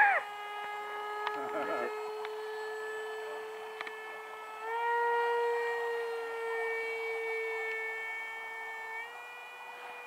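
Hobbyking Sonic 64 RC jet's 64 mm electric ducted fan in flight: a steady high whine. About five seconds in it rises in pitch and gets louder, and it steps up slightly again near the end.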